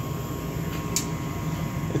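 Steady mechanical hum and rushing air noise, like a running fan or blower motor, with one brief sharp click about a second in.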